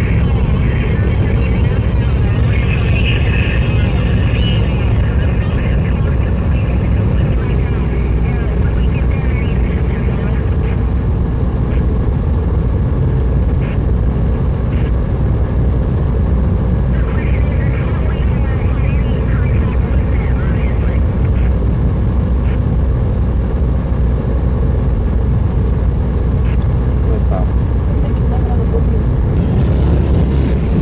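Steady low rumble of wind and road noise from riding in the open back of a car moving at freeway speed, with engine and traffic sound under it. Faint higher squeaky sounds come through about a second in and again around seventeen seconds.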